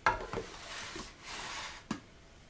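A spoon and dishes clattering while hummus is served out of a blender jar into a bowl: a sharp knock at the start, scraping in between, and another knock near the end.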